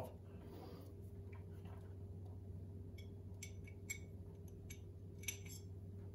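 A few light metal clicks and ticks in the second half as the steel blade is taken out of a bronze low-angle block plane and handled. The clicks sit over a faint steady low hum.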